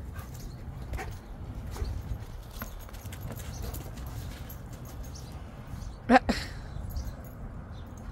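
A dog gives one short, loud bark about six seconds in, with a smaller yelp right after. Underneath is a steady low rumble of wind on the microphone.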